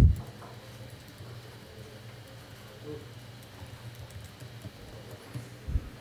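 Faint scattered clicks of typing on a computer keyboard over a steady low hum, with a soft low thump near the end.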